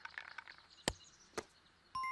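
Cartoon sound effect of a small box being opened: two sharp clicks about half a second apart, then a bright ringing chime of a sparkle starting right at the end.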